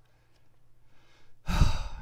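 A man's loud breath close to the microphone, with a low thump from the air hitting it, about one and a half seconds in after a pause of near silence.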